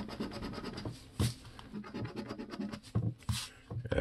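Scratch-off lottery ticket coating being scraped off with the edge of a hand-held disc: a quick run of short, repeated scraping strokes that thins out near the end.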